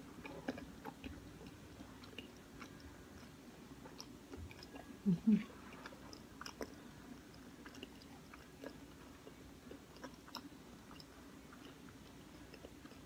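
Close-up chewing of pizza, with many small wet mouth clicks over a faint steady hum. About five seconds in come two short low vocal sounds from the eater, the loudest moment.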